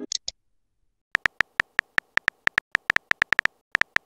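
Phone keyboard tap sounds from a texting-story app: a quick run of short identical clicks, about seven a second, with a brief pause before the last few near the end. Two short high blips at the very start.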